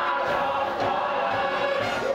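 A stage-musical number: massed voices hold a sustained note over a theatre orchestra.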